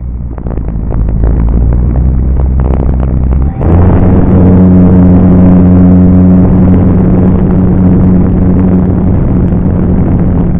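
A radio-controlled model airplane's motor heard up close from a camera on board, with wind buffeting the microphone. About three and a half seconds in, the motor is opened up: its note jumps to a louder, higher steady pitch that holds.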